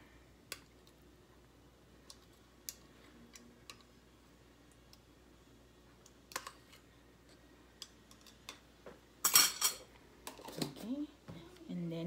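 A metal fork clicking lightly and irregularly against a glass jar of pickled ginger as slices are forked out. About nine seconds in comes a short, louder rustling noise, and then a voice starts near the end.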